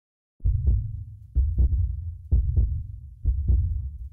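Heartbeat sound effect: four low double beats, lub-dub, about one a second.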